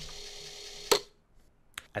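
A steady faint hiss with a low hum, cut by one sharp click about a second in, then near quiet with a couple of small clicks before speech resumes.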